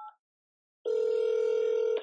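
A short touch-tone keypad beep as a key is pressed on the phone call, then, after a pause, a loud, steady telephone tone lasting about a second before the automated voice prompt resumes.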